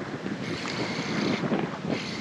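Wind buffeting the microphone: a steady rushing noise.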